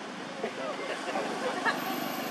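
Indistinct voices of people talking in the background over a steady outdoor hiss, with a short click near the end.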